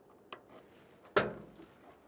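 A faint click from a key in a 1968 Pontiac Firebird's trunk lock. A little past a second in comes one sharp, loud clunk that fades quickly: the trunk latch releasing and the lid coming open.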